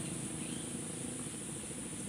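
Steady high-pitched chirring of insects, faint under the open-air background.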